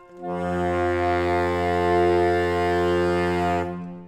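Saxophone quartet holding one long closing chord, with a low baritone saxophone note at the bottom. The chord is cut off near the end and rings away briefly in the room, ending the piece.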